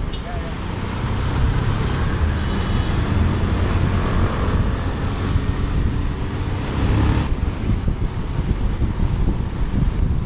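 Motorcycle engine running on the move in traffic, with steady wind noise rushing over the microphone.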